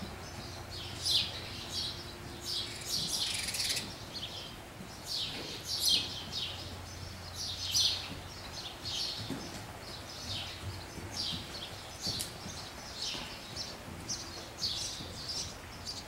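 Small birds chirping repeatedly in short high notes, about two a second, over a faint steady low hum.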